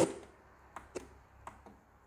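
A few light clicks, four in all, spread over the second half, as the tuning button of a Victor CDioss QW10 CD radio cassette player is pressed and the AM tuner steps up between stations, with faint hiss between them.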